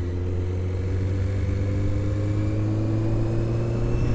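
Honda CBR600 sportbike's inline-four engine running steadily under way, its pitch rising slowly and evenly as the bike gains a little speed.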